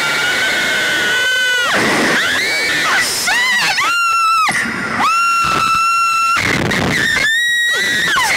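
Two young women screaming in fright and excitement while being flung on a Slingshot reverse-bungee thrill ride: a series of long, high-pitched screams, each held for a second or more, often two voices at once at different pitches.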